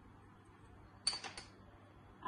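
A quick cluster of two or three light clinks about a second in, typical of a small ceramic prep bowl knocking against the others on the ingredient tray as it is handled, over a faint steady hum.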